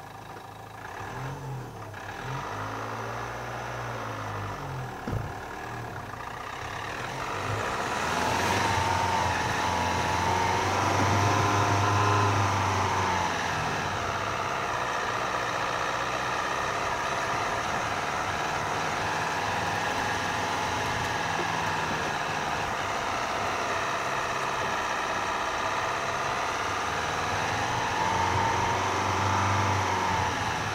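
Dacia Duster's engine running at low speed on a rough, muddy green lane, the revs rising about a quarter of the way in, easing, then rising again near the end. A single sharp knock about five seconds in.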